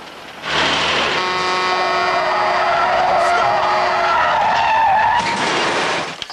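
Car tyres screeching in a long skid, with a steady car horn held over the middle of it. The sound starts about half a second in and cuts off just before the end.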